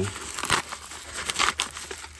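Yellow kraft-paper bubble mailer crinkling as it is pulled open by hand and reached into, in irregular crackles with louder bursts about half a second in and again near the end.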